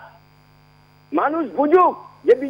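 Steady electrical hum on a telephone line carrying a phone-in caller's voice: for about a second only the hum is heard, then the caller starts speaking again.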